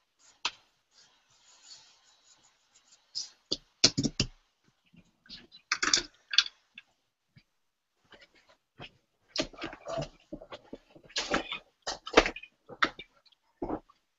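Irregular clicks, taps and rustles of things being handled on a desk, with a few louder knocks about four and six seconds in and a busier run of them from about nine to thirteen seconds.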